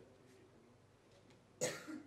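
Quiet room tone, then about a second and a half in a single short, sharp cough.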